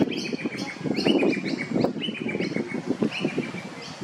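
Birds calling: quick runs of short, sharp, high chirps, several a second, each run stepping slightly down in pitch, thinning out near the end.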